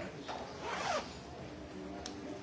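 Pool balls rolling and rattling across the table just after the break, a short swishing rattle in the first second that then dies down.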